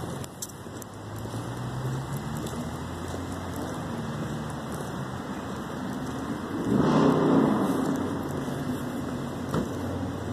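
Road traffic on wet pavement: a steady hum of cars, with one car passing about seven seconds in, its sound swelling and then fading away.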